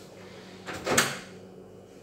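Microwave oven door being opened: a short latch click and then a louder clack about a second in, with a brief ring after it.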